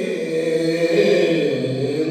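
A man's unaccompanied voice chanting a manqabat, a devotional poem in praise of Imam Ali, in Gilgiti (Shina), with long held notes that glide from one pitch to the next.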